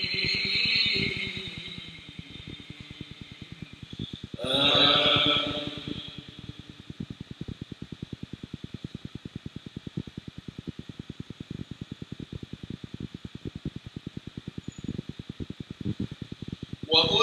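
A single drawn-out chanted call in prayer, heard over the mosque's microphone and echoing in the prayer hall about four seconds in. A quiet pause follows, with a faint, rapid, even ticking in the background.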